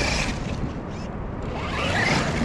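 Traxxas X-Maxx 8S brushless RC monster truck on paddle tires, its motor whining up and down in pitch as it drives through loose beach sand.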